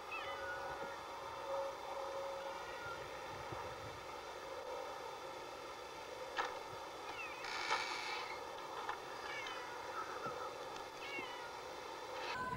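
A cow mouthing a metal gate latch, which gives a single sharp click about six seconds in. Short, faint, high chirping calls come and go against a steady faint background.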